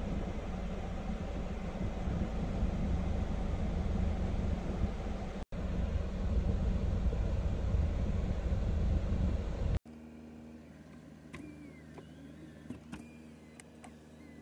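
Hyundai Starex's climate-control blower running at high speed, air rushing steadily out of the dashboard vents with the engine idling underneath, as the vent air is switched from cold to hot. After about ten seconds it cuts to a much quieter cabin with a few faint clicks.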